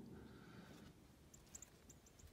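Near silence: quiet outdoor ambience, with a few faint, very high, short chirps in the second half.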